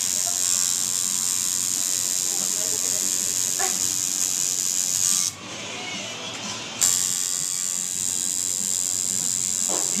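Coil tattoo machine buzzing steadily as the needle works colour into skin. It stops about five seconds in while the needle is dipped into the ink caps, then starts again a second and a half later with a sharp buzz.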